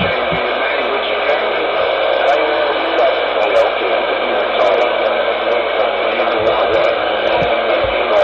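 Ranger CB radio's speaker putting out a steady rush of static from a received signal, cut off above the voice range, with an indistinct voice buried in it.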